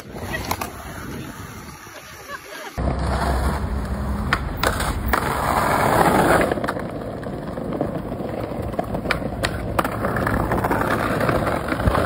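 Skateboard wheels rolling on rough pavement, a steady low rumble with a few sharp clacks from the board. A cut about three seconds in brings a louder, deeper rolling rumble.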